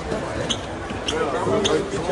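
Footsteps of a group climbing hard stairs: sharp taps about twice a second, over people talking in a reverberant hall.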